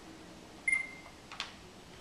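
A short, high electronic beep about a third of the way in, followed by a single sharp click, over quiet room tone.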